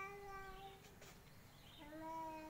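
Faint, high-pitched voice singing two long held notes, one at the start and another beginning near the end.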